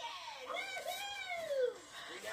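High-pitched cartoon character voices playing from a television speaker, with one long utterance that slides up and then down in pitch through the middle.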